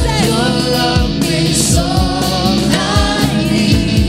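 Live gospel worship music: a woman singing lead with backing singers over a band with electric guitar and keyboards, loud and steady, with a cymbal crash about a second and a half in.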